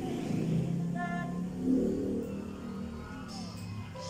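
A woman singing with band accompaniment. The music swells to its loudest a little before the middle.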